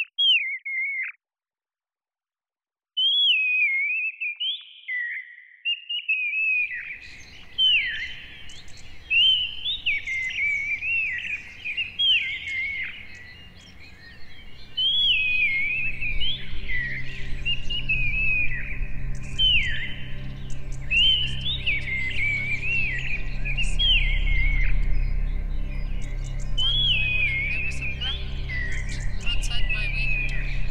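Human speech converted into blackbird-like song by keeping a single harmonic of the voice: whistled phrases of gliding chirps, one after another, with a short break near the start. A background soundscape comes in about a quarter of the way through, and about halfway a low, sustained synth pad joins beneath the song.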